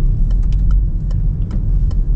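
Steady low road and engine rumble inside a Citroën car with an automatic gearbox, coasting with the accelerator released and slowing gently, with a few light, irregular clicks.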